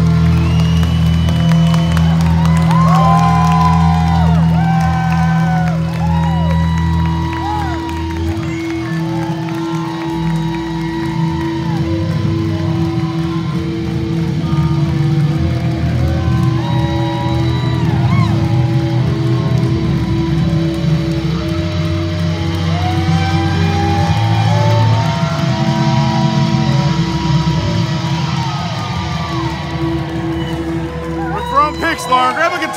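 Live rock band playing loud on an amplified stage, with electric guitar, bass, drums and keyboards under a man singing lead, heard from within the audience.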